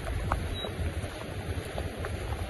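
Wind buffeting the microphone, with a heavy rumble in the low end over a steady outdoor hiss, during the rain.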